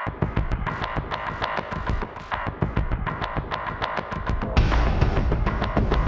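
Gritty sequenced electronic percussion loop from a Kontakt sample instrument, a fast run of evenly spaced hits over a throbbing pulse. A heavier bass layer and a brighter top come in a little over halfway through.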